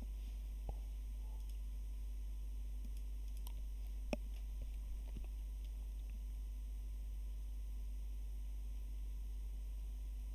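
Steady low hum with a few scattered, faint computer mouse clicks, the sharpest about four seconds in.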